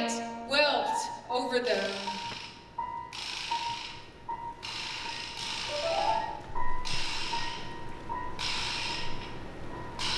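Contemporary chamber ensemble music: a sung and bowed-string phrase ends in the first two seconds, leaving one thin high note held on. Over it come four airy, noisy swishes, each about a second and a half long.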